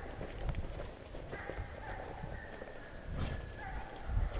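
Footsteps of a person walking along a muddy woods trail, with hounds baying in the distance: long held calls start about a second in.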